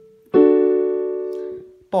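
Digital piano sounding a D major chord (D, F-sharp, A), struck once about a third of a second in and fading away over about a second and a half.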